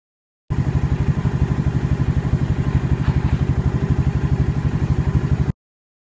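Motorcycle engine idling with an even, rapid putter of about ten pulses a second. It starts abruptly about half a second in and cuts off just as abruptly about half a second before the end.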